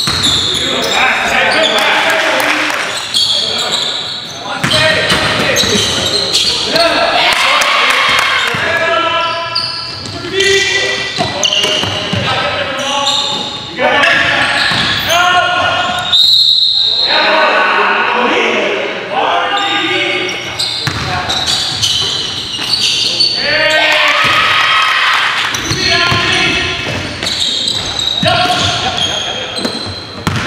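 Basketball dribbled and bounced on a hardwood gym floor during a pickup-style game, among players' indistinct voices, all echoing in the gym hall.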